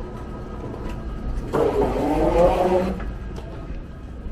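Hard wheels of a rolling suitcase rattling over the grooved metal comb plate at the end of a moving walkway. A rough, grinding clatter lasts about a second and a half, a little past the middle, over the steady hum of the terminal.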